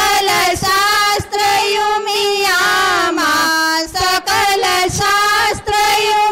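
A woman singing a slow Hindu devotional prayer song, with long held notes in phrases broken by short pauses.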